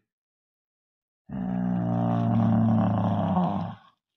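A person's voice making a low, steady engine noise, the way a child voices a toy car being driven. It starts about a second in and holds for about two and a half seconds.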